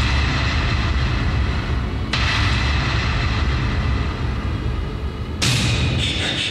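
Dramatic film soundtrack: a loud, deep rumbling with booming swells, a new hit about two seconds in and another near the end.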